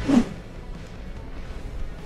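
A brief swoosh transition effect at the very start, as the background music cuts off. It is followed by faint, even background noise.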